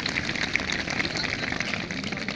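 Audience of seated schoolchildren clapping, a dense patter of many hands.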